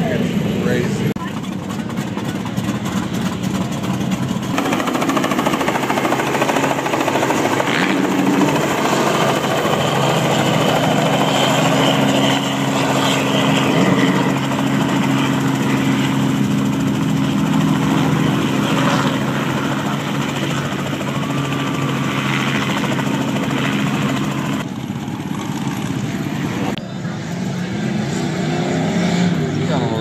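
Motor engines running steadily amid a crowd's voices. The sound shifts abruptly several times as the scene changes.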